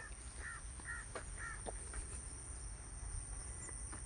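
A bird calling three short times in quick succession, about half a second apart, over a faint steady high-pitched whine.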